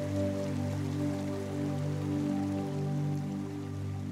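Gentle new-age background music of long, sustained chords, with a soft rain-like patter beneath.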